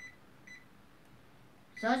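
Two short, faint electronic beeps about half a second apart.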